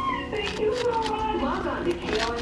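A high voice held in long, drawn-out notes that waver and slide in pitch, dropping lower early on and gliding up near the end.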